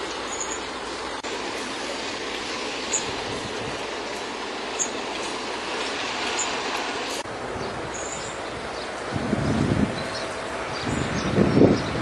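Steady wind noise on the microphone outdoors by open water. It shifts abruptly about a second in and again about seven seconds in, and stronger low gusts buffet the microphone twice in the last three seconds.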